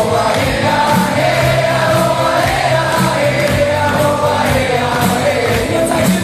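Live band music with a large crowd singing along together in chorus.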